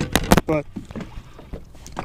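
A quick cluster of sharp clicks and knocks, about five within half a second, as the fish-finder display at the bow is handled, then a low, steady rumble of wind on the microphone.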